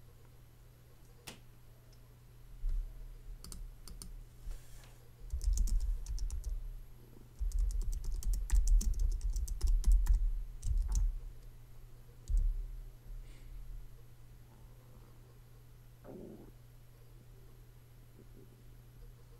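Computer keyboard typing and mouse clicking picked up by a nearby desk microphone, in irregular spurts for about ten seconds, with dull low thumps mixed in, then settling back to a faint steady hum.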